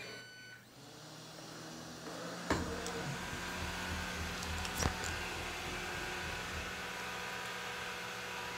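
Ecovacs Deebot N79 robot vacuum starting a cleaning run: a brief electronic tone at the very start, then a click about two and a half seconds in as its motors start, followed by a steady motor hum as it drives across the floor. Another sharp click comes near the five-second mark.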